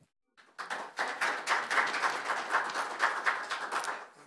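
Audience applauding, starting about half a second in and tapering off near the end.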